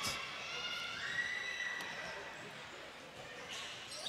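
Quiet basketball-stadium ambience during a free throw: a faint murmur from the crowd in a large hall, with a few faint steady high tones, slowly fading.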